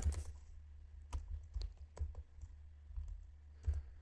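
Computer keyboard being typed on: a handful of separate, irregularly spaced keystrokes over a low steady hum.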